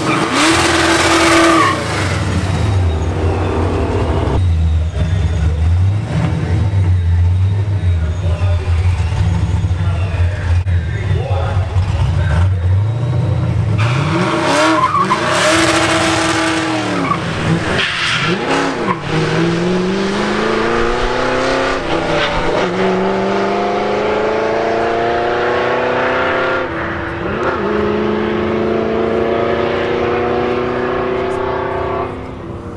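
Supercharged small-block Ford V8 in a stick-shift Fox-body Mustang at a drag strip: a short burst of hard revving with tyre squeal at first, then a steady low idle, then blips of the throttle on the line. Past halfway it launches and pulls away, the engine pitch climbing and dropping twice at manual gear changes.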